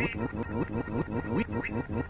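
A cartoon character's voice clip chopped into a rapid stutter loop: one short syllable from "we do it" repeated about seven times a second, with music underneath.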